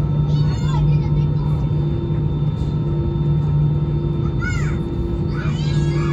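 Steady low drone of an Airbus A320-216's CFM56 engines and cabin air at taxi, heard inside the cabin. Several short high-pitched cries that rise and fall break in, about half a second in and again from about four and a half seconds on.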